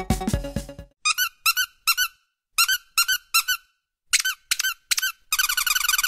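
Background music fades out, then a string of short high-pitched squeaks follows, one or two at a time with pauses between. Near the end they run together into rapid, continuous squeaking.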